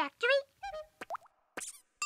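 A brief bit of high, voice-like sound, then about a second in a short cartoon sound effect: a click and a quick upward-gliding boing.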